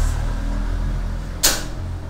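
A pause in a man's speech: a steady low hum with one short, sharp hiss about one and a half seconds in.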